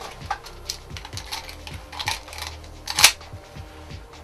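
Clear plastic spring BB pistol and magazine being handled: scattered light plastic clicks and knocks, the sharpest about three seconds in.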